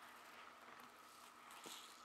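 Near silence: room tone, with a faint tick near the end.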